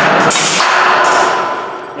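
Deadbolt being pried out of a steel training door with a forcible-entry bar, its machine screws breaking: a sudden loud crack of metal, then a metallic ring that fades over about a second and a half.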